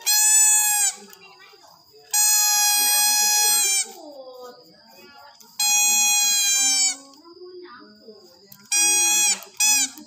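Toy trumpet blown in five loud single-note blasts, the longest nearly two seconds and the last a short toot, each note sagging slightly in pitch as the breath runs out.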